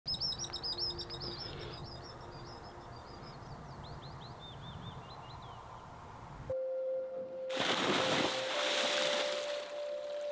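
Small birds singing, a quick run of high chirping notes over a low outdoor background. About six and a half seconds in it cuts to a steady held musical tone, and a second later a loud rush of churning water comes in under it.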